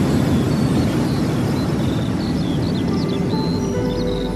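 A station intro with a deep, noisy low rumble, joined from about halfway by short bird chirps. Soft, sustained new-age music tones come in near the end.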